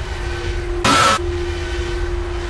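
Dark ambient soundtrack for a horror outro: a low rumble with a steady hum, cut by a short burst of hiss about a second in.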